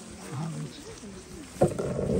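Indistinct voices of a group of people walking together, with a sharp knock about one and a half seconds in, the loudest sound.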